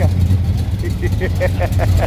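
A 340 V8 in a silver Dodge Dart idling with a steady low rumble, with faint voices behind it.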